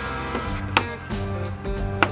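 A knife cutting through a red potato and striking a plastic cutting board, one sharp knock about three-quarters of a second in, over steady background music.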